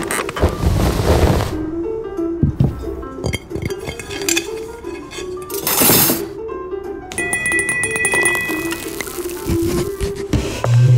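Background music with a slow melodic line, over close-miked clinks of metal cutlery being laid on a cloth-covered table. A short rustle comes about six seconds in, and a clear ringing tone holds for about two seconds near the end.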